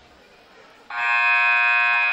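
Gymnasium scoreboard horn sounding one loud, steady buzz that starts about a second in and holds for about a second and a half. With the game clock reset to 6:00 for period 4, it is the horn ending the break between quarters.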